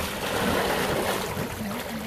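Water splashing and sloshing as a great white shark rolls at the surface against the side of a boat, a continuous rushing noise with small low knocks.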